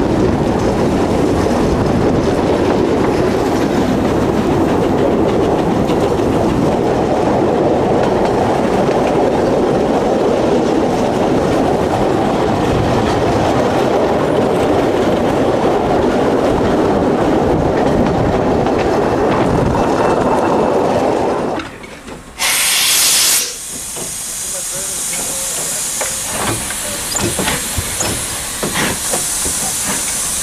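Narrow-gauge train running, a steady rumble of wheels on rail heard from beside the carriages. It cuts off abruptly about two-thirds of the way in, followed by a short loud hiss and then quieter steam hissing from a standing narrow-gauge steam locomotive, with a few knocks.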